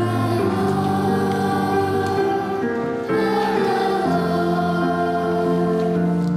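Children's choir singing a hymn in held notes over sustained low accompanying notes.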